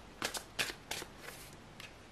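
Tarot cards being handled: a handful of short, quick papery flicks and rustles as a card is drawn from the deck and laid on the spread.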